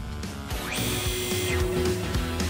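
Background music with a cartoon winch sound effect: a hissing whir that starts about half a second in and lasts about a second, with a steady hum carrying on under it, as the toy truck's winch cable pays out.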